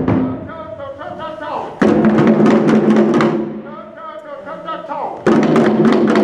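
Group of hand drums, djembes, played together in loud, dense bursts of about a second and a half: one dies away just after the start, another comes about two seconds in, and a third near the end. Between the bursts a single voice calls out.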